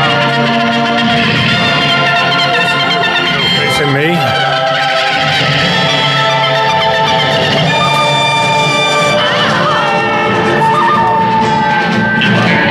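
A recorded song with a singing voice and guitar, played loud through small, inexpensive two-way monitor speakers and heard in the room.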